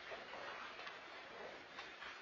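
Faint room sound of a standing congregation, with quiet shuffling and a few light, irregular clicks and knocks.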